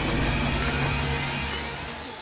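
Low, steady rumble of a vehicle engine, fading slowly.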